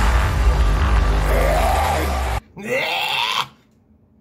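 Loud electronic metalcore track with gliding synth lines, cutting off abruptly about two and a half seconds in. A short vocal cry or growl follows, then near silence.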